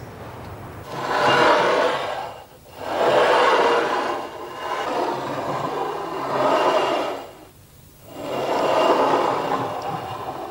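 Slow, heavy breathing drawn in four long, noisy swells, a woman breathing deeply as if going into a trance.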